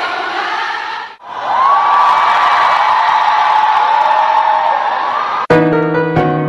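Large concert crowd of fans cheering and whooping, with one long held high cry over the din; the sound drops out briefly about a second in. Near the end a piano starts playing chords.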